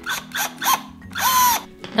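Cordless drill driving screws through a swivel caster's mounting plate into an MDF board, in short bursts; the last and longest, a little past a second in, has the motor whine rise, hold and fall.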